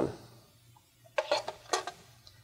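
A quick run of about five light clicks, starting about a second in: a screwdriver and a small screw being handled against a plastic wall-outlet cover.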